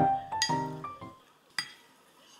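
Soft piano background music that stops a little over a second in. Then a single short clink of a wooden spoon against a ceramic bowl as a spoonful of fried rice is scooped.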